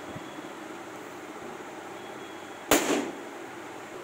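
An inflated rubber balloon bursting with one sharp pop when pricked with a pointed tip, about two-thirds of the way in.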